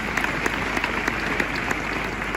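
A group of people applauding, steady clapping after the cheers of '¡Viva!'.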